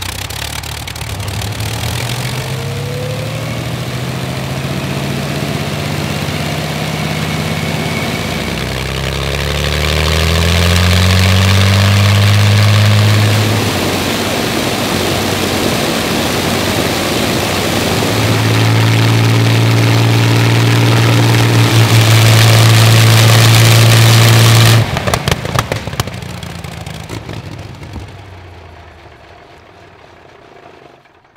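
Rolls-Royce Merlin 22 V12 aero engine with propeller running on a test-stand trailer. It rises in pitch and runs up to high power about ten seconds in, drops back, runs up loud again from about eighteen seconds, then cuts off abruptly near twenty-five seconds and dies away.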